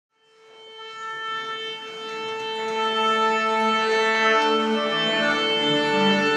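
Symphony orchestra tuning up: one note held steadily right through, with more instruments coming in on and around it. The sound fades in over the first couple of seconds.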